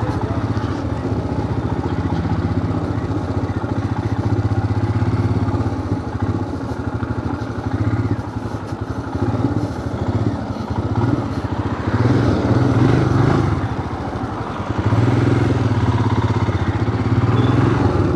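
Motorcycle engine running while riding, a steady low hum with wind and road noise, growing louder in two stretches as the throttle opens, about two-thirds of the way through and again near the end.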